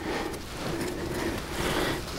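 A wet plastic tarp rustles and crinkles as it is pulled over a bag in the rain, with a steady wash of noise.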